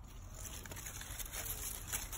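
Leafy branches and foliage rustling as they are handled: a soft hiss with a few faint clicks, getting louder near the end.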